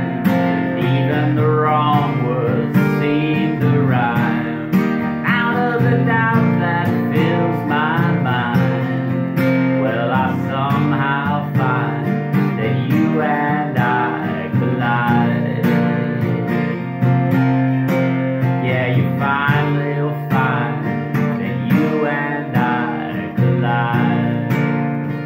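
Steel-string acoustic guitar strummed in a steady rhythm with a capo on, unamplified, with a man singing over it.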